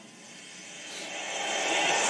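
A rushing, jet-like whoosh with no clear pitch, swelling steadily louder over two seconds.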